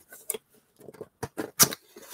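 A small cardboard box handled by hand: a few light knocks and scrapes, the loudest about one and a half seconds in.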